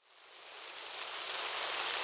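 Rain sound effect, a steady hiss of falling rain that fades in from silence over the first second and a half.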